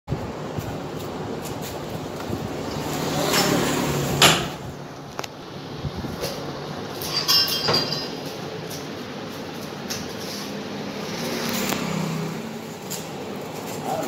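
Paper plate making machine running, a steady mechanical noise that swells and fades, with a sharp knock about four seconds in and a clatter of metal parts around the middle.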